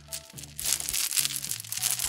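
Background music with steady low notes, and from about half a second in a rustling clatter of beads as a heavy multi-strand beaded necklace is shaken and turned in the hand.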